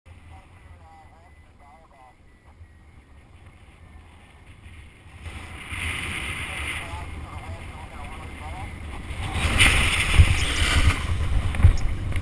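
Wind rushing over the microphone of a paragliding pilot's camera. It rises suddenly about five seconds in and grows louder and gustier near the end, with heavy buffeting thumps, as the paraglider wing takes a frontal collapse.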